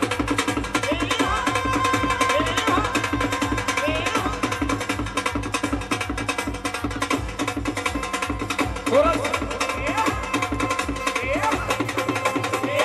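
Live devotional bhajan music: a fast, steady drum beat driving a dance rhythm, with a melodic line gliding over it and no lead singing.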